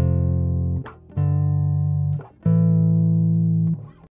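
Closing phrase of an R&B groove: electric guitar with bass and keys holding three sustained chords of about a second each, each one cut off short, with no drums under them.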